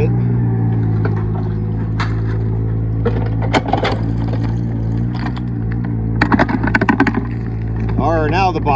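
Backhoe's diesel engine running steadily, with a few scattered knocks and a quick run of clacks about six seconds in.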